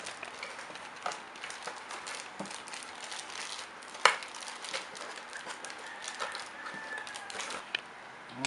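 Crinkling and rustling of plastic packaging being unwrapped by hand, with scattered small clicks and one sharper snap about four seconds in.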